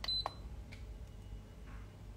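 A short high electronic beep and a light click right at the start, then only a low steady hum.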